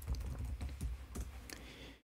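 Computer keyboard typed in a quick run of keystrokes as a password is entered into an authentication prompt. The sound cuts off suddenly at the end.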